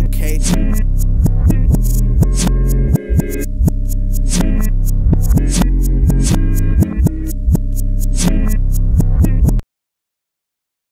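Hip-hop beat without vocals: deep, sustained bass notes under quick, regular hi-hat clicks. The beat cuts off abruptly near the end.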